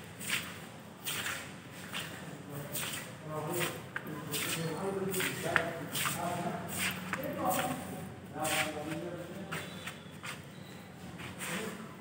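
Indistinct voices of people talking, with the filmer's footsteps on a stone floor.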